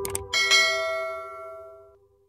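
A mouse-click sound effect, then a bright bell ding that rings out and fades, from a YouTube subscribe-and-notification-bell overlay, over the last piano note dying away.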